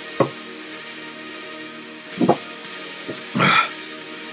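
A man gulping milk from a gallon jug: a few loud, separate swallows, then a short breathy exhale near the end as he stops drinking. Background music plays steadily underneath.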